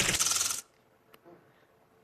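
Game-show letter-reveal sound effect: a bright burst of rapid ticks lasting about half a second as a letter flips up on the word board, followed by quiet.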